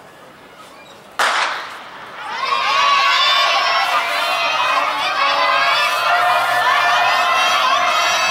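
A starter's pistol fires once about a second in, the signal that starts the race. Soon after, a crowd of many voices cheers and shouts encouragement to the runners.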